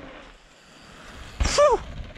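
Faint background noise, then about one and a half seconds in a single short shout from a person, falling in pitch.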